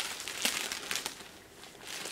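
Clear plastic packaging bag crinkling as it is handled and pulled open, with a few sharp crackles in the first second, then dying down.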